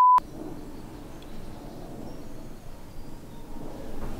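A steady test-tone beep, the tone of a bars-and-tone test signal, cuts off abruptly just after the start. Faint, steady background ambience follows.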